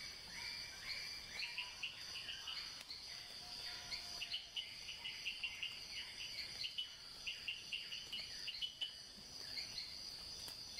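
Faint nature ambience: a steady high insect buzz with birds calling over it. Short rising notes come in the first couple of seconds, then rapid runs of short chirps from about four seconds in.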